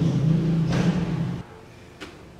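A deep, steady low tone, typical of a sound-effect sting added in editing. It starts suddenly and cuts off abruptly after about a second and a half.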